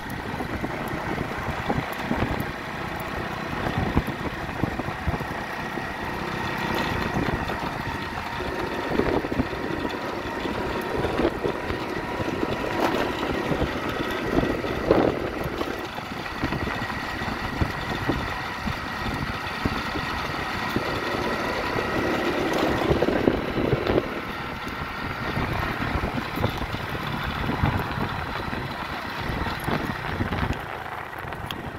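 A small engine running steadily, with the hoofbeats of a single-footing horse on dry dirt heard over it.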